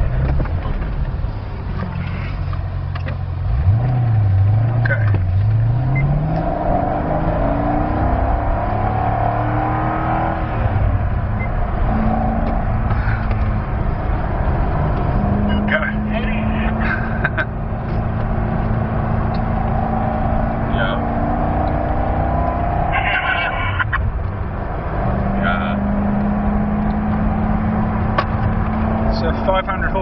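Chevrolet Corvette Z06's 7.0-litre V8 heard from inside the cabin. It pulls away hard about three seconds in, its pitch rising in repeated sweeps through the gears, then runs at a steady higher note at speed, easing off briefly about three-quarters of the way through.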